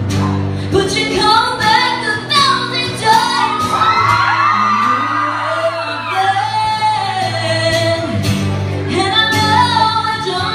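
A female singer singing a pop song live, accompanied by an acoustic guitar, in a large room.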